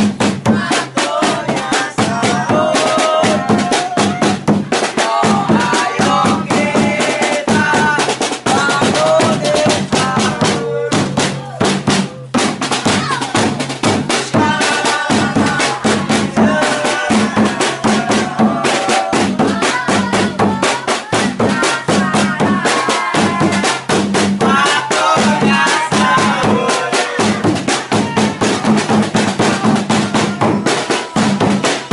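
A large marching drum, carried on straps and struck with a mallet, beaten in a fast, steady rhythm, with voices singing along over the beat.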